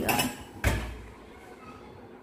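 A single sharp clunk from the open dishwasher about half a second in, fading quickly into quiet room noise.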